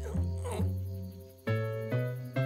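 A short, deep cartoon-dog grunt as the big dog settles down onto his bed, followed by soft background music with a new chord struck about a second and a half in.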